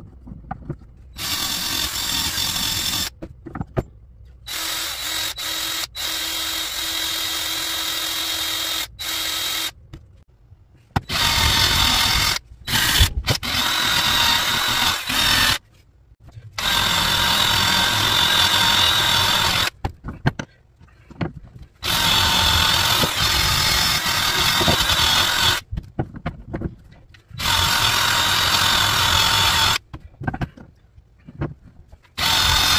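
Cordless drill with a wire-wheel brush scrubbing the black casting scale off a freshly cast copper coin clamped in a vise. The drill runs in about six bursts of a few seconds each, with short pauses between them.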